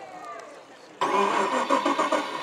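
An engine start-up sound, most likely the RC Tito Neri model tug's onboard sound module simulating its diesels. It cuts in abruptly about halfway through and keeps running loudly.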